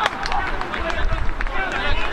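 Men's voices shouting and calling around the pitch just after a goal, with a few sharp claps and a low rumble on the microphone.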